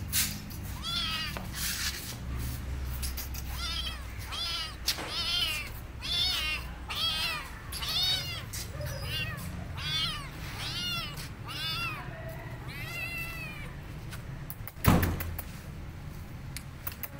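A hungry young stray kitten meowing over and over, about a dozen high-pitched cries roughly a second apart. A single sharp thump comes near the end.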